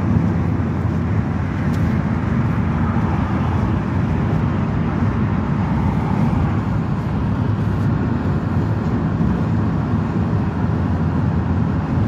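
Steady road and engine noise heard inside the cab of a vehicle driving at motorway speed, a low rumble that holds even throughout.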